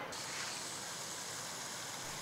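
Steady hiss of fountain water jets spraying and splashing into the basin.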